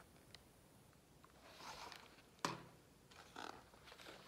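Near silence in a room, with faint paper rustling and one sharp click about halfway through as a hardcover picture book is handled and its page begins to turn.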